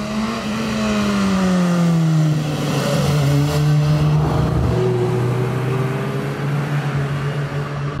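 Motorcycle riding past on a mountain road, its engine note dropping in pitch as it goes by and then holding a steady drone, with a car passing too.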